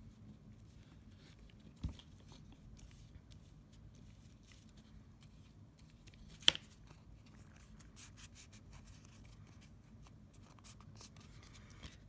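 Faint scratchy brushing and paper handling as glue is brushed onto the edges of a paper-covered mat board book cover. A soft thump about two seconds in and one sharp click a few seconds later, the loudest sound.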